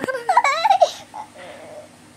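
A baby laughing in high-pitched, wavering giggles for about a second, then dropping to a quieter, breathy catch before the next laugh.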